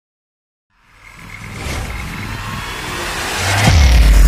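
Logo-intro sound effect: after a short silence, a rising noise swell builds steadily louder and lands on a deep bass hit near the end, leading into electronic music.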